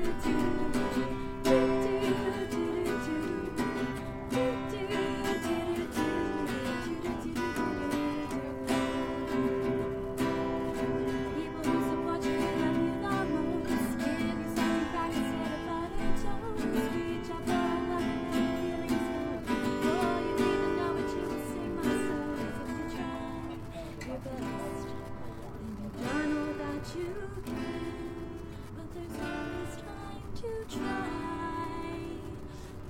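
Acoustic guitar strummed steadily in an instrumental passage of a song, chords ringing between repeated strokes.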